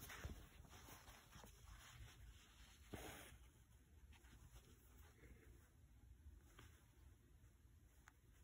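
Near silence, with faint rustles of fabric and embroidery thread being drawn through cloth as a hand-embroidered lazy daisy stitch is worked; a slightly louder brush about three seconds in.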